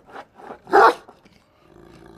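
Central Asian Ovcharka (Central Asian Shepherd Dog) barking over a fence as a guard warning at a person behaving provocatively: a short bark just after the start, then one loud bark about a second in.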